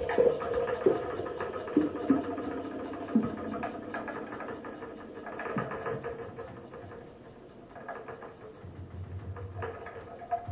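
Experimental electronic noise improvisation: scattered clicks and knocks over held tones that fade, thinning to a quieter stretch in the middle, then a low pulsing drone coming in near the end.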